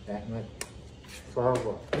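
Short spoken replies of a family close to the microphone, a brief word, a pause and more words, with a single short click about half a second in.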